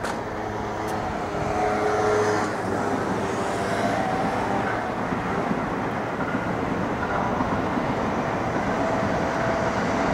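A JR West 207 series electric commuter train running slowly into a depot's cleaning track: a steady rumble that grows a little louder about two seconds in, with a few faint, brief whines above it.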